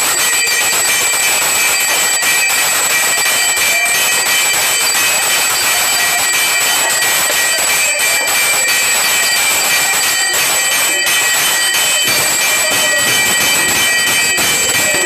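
Temple bells and gongs clanging continuously during an aarti: a dense, steady metallic din with several sustained ringing tones over it.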